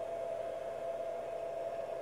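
Quiet room tone: a steady, unchanging mid-pitched whine over an even hiss.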